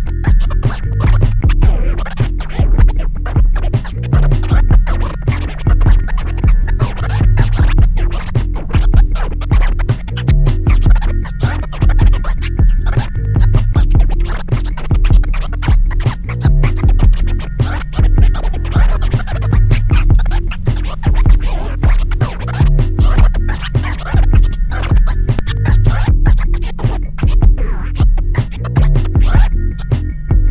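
Turntable scratching over a looping backing beat: a vinyl record is pushed back and forth by hand in quick strokes while the crossfader chops the sound, with a deep bass hit recurring about every three seconds.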